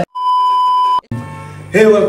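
A single steady electronic beep, lasting just under a second and cut off sharply, after the music stops. A man's voice starts near the end.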